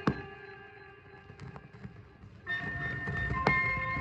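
Instrumental reggae playing from a dubplate record. Just after the start a loud, sharp crack sounds, and the music thins out and drops low. About two and a half seconds in, the full band comes back in with heavy bass, and another sharp crack comes about a second later.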